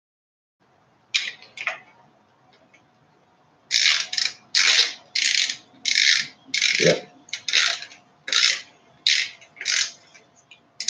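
A hand tool working a bolt while a chain guide is fitted to a mountain bike: a run of short rasping strokes. Two come about a second in, then from about four seconds they settle into a steady rhythm of roughly one and a half strokes a second.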